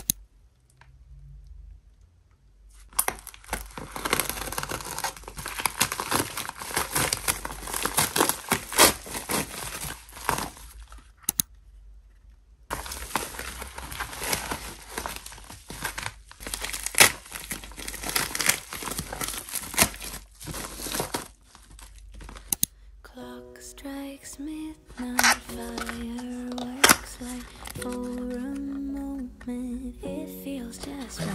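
Plastic mailer bag and bubble-wrap packaging being handled, torn open and crinkled, in two long stretches of loud rustling with a short break between them. In the last third, soft music with sustained notes plays under a few sharp clicks and taps from handling a small cardboard box.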